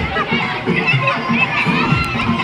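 Crowd of children shouting and calling out, with music playing over loudspeakers underneath.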